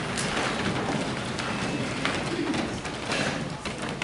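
Congregation milling about: a general hubbub of many low voices and shuffling movement.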